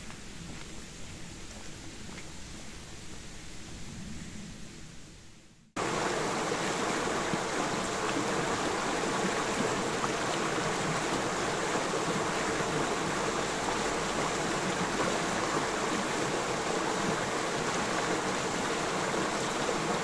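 A quieter outdoor background fades away, then about six seconds in the steady rush of a shallow rocky stream, water tumbling over stones in small rapids, starts abruptly and keeps up evenly.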